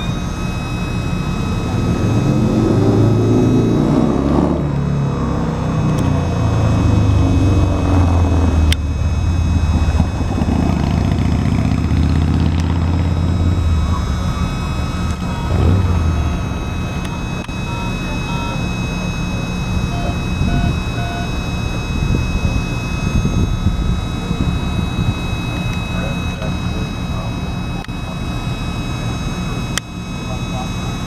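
Heavyweight steel passenger cars rolling slowly past, their wheels and trucks rumbling on the rails, heaviest in the first half and easing off after about 16 seconds as the train slows. A steady high whine or squeal sounds over it the whole time.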